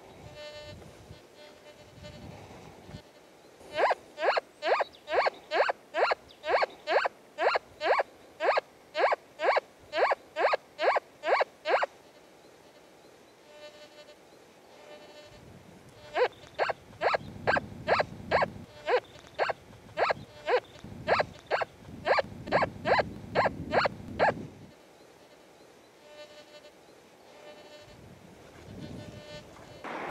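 Nokta FORS metal detector in all-metal mode giving its single target tone over and over, about two beeps a second, each rising slightly in pitch, as the coil is swept back and forth over a buried target. There are two long runs of beeps, and between them only a faint constant threshold tone.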